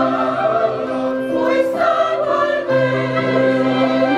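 A mixed choir singing a hymn in long held chords, moving to a new chord every second or so.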